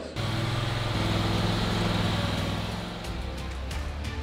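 Commercial lawn mower's engine running steadily as the mower is driven into the trailer's wheel chock, easing off slightly near the end.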